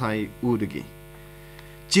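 A newsreader's speech, then about a second of steady electrical mains hum underneath the recording. The voice resumes near the end.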